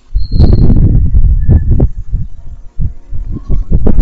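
Breath and handling noise hitting a close microphone: loud, low, rumbling puffs and thumps for about two seconds, then a run of separate short thumps and clicks.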